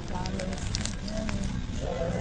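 Indistinct voices in the background, with scattered sharp crackling clicks over a low hum.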